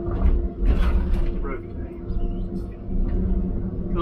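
Diesel engine of a John Deere tracked forestry machine running steadily under heavy load while its boom drags a stuck skidder, with deep low rumbling surges in the first second and a half.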